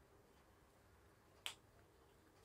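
Near silence, broken by one short, sharp click about one and a half seconds in.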